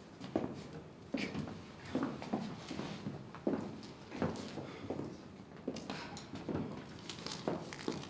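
Footsteps of a person walking steadily across a stage floor, a little more than one step a second.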